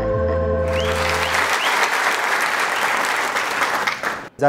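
Audience applauding, the clapping rising in under a held music chord from the intro jingle that fades away within the first second or two.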